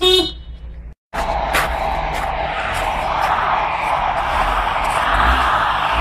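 A short car-horn toot, then a steady loud noise of a hatchback's engine revving with its wheels spinning in snow. The car is straining against its handbrake, which a bystander says had been left on.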